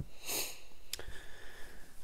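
A man sniffing once through the nose, followed by a single light click about a second in.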